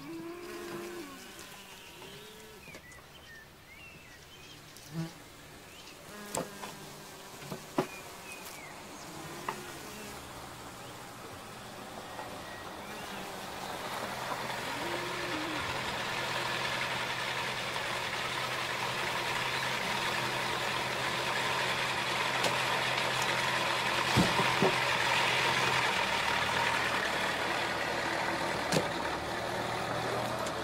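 A car approaches and pulls up, its engine and tyre noise building from about halfway through and running steadily near the end; the car is a 1960s Mercedes-Benz saloon. Earlier, a few sharp clicks of a knife cutting fish on a wooden barrel lid.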